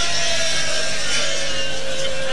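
A single long held voice note that slowly falls in pitch, over the low murmur of a seated crowd.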